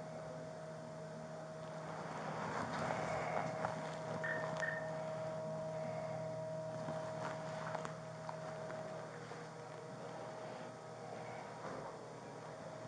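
Steady electrical hum under rustling and a few clicks as the body-worn camera and the officer's gloved hands move, with two short high beeps about four seconds in.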